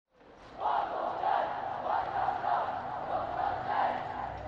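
Many voices chanting together in unison, starting about half a second in and swelling and falling in long phrases.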